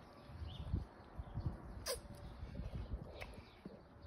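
Faint outdoor birdsong: a few short chirps here and there and a quick downward-sweeping call about two seconds in, over low irregular rumbling.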